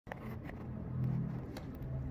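A steady low motor hum, like a vehicle engine running nearby, with a few faint ticks.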